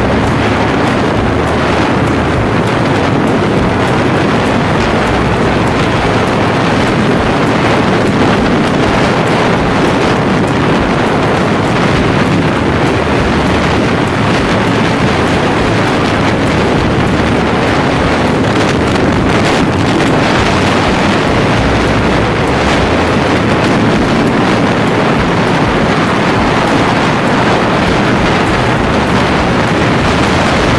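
Wind rushing over the microphone mixed with the steady running of a Bajaj Pulsar 220's single-cylinder engine while the motorcycle cruises at steady speed. The sound is loud and even throughout, with no revving or gear changes standing out.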